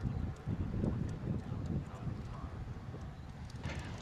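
Distant rumble of a Space Shuttle launch: a faint, uneven low crackle from the rocket exhaust that grows a little fainter near the end.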